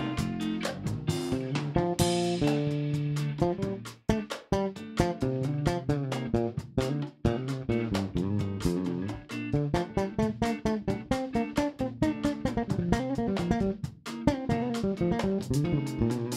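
Live bossa nova band playing instrumental: electric bass and guitars carry a busy plucked groove over drums. Tenor saxophone holds notes in the opening seconds, with a cymbal crash about two seconds in, and the band makes short breaks near four, seven and fourteen seconds.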